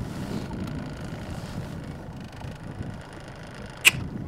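Small fishing boat under way, its motor humming steadily under wind noise on the microphone. There is one sharp click just before the end.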